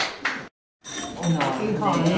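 China coffee cups, saucers and cutlery clinking as cake and coffee are served, amid chatter. The sound cuts out completely for a moment about half a second in.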